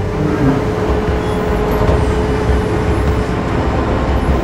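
Engine of a heavy railway crane running: a steady low rumble with a held whine that stops near the end.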